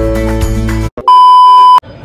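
Background music that cuts off just under a second in, then a loud, steady electronic beep tone lasting under a second that stops abruptly.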